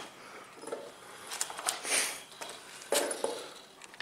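Quiet shuffling and handling noises with a few light knocks and a short breathy hiss near the middle, from someone moving about on a concrete floor while holding the camera.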